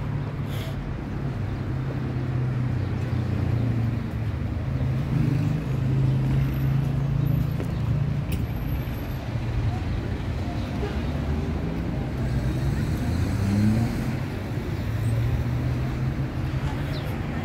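City street ambience: road traffic with a steady low engine hum from cars, and voices of passers-by.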